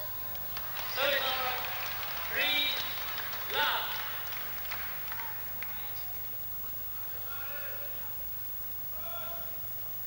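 Sound of a live badminton match in a crowded indoor arena: short, rising shouts and squeaks over the crowd's noise, with a few sharp clicks. These are loudest in the first four seconds and fainter after that.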